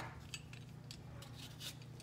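Hand-held vegetable peeler scraping the skin off a raw potato, a few faint short strokes after a sharp click at the start, over a steady low hum.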